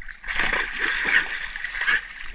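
Two dogs, one a German shorthaired pointer, splashing and wading through shallow, grassy river water close by. The splashing runs steadily from just after the start to the end.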